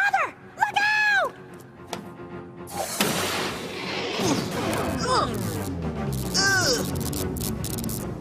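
Cartoon sound effects: a sudden loud crash about three seconds in, with a noisy tail that fades over the next two seconds, set among short shouted cries and background music.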